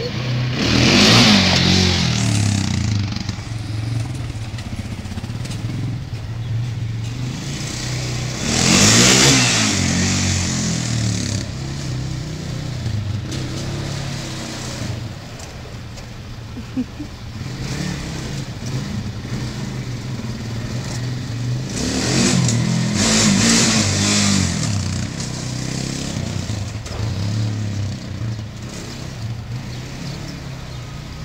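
Sport quad (ATV) engine revved hard in surges as the rider pulls wheelies: three loud rising-and-falling bursts, about a second in, about nine seconds in, and around twenty-two to twenty-four seconds, with the engine running lower in between as the quad moves off down the street and back.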